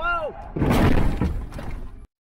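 A brief shout, then a loud crunching collision about half a second in as a semi-trailer sideswipes a pickup truck, with breaking and shattering, lasting about a second before the sound cuts off suddenly.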